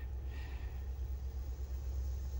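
MaxxFan roof vent fan running on its lowest speed with a steady low hum. It is the speed at which it keeps running; at higher settings the fan shuts itself off, a fault the owner has not traced (motor or relay).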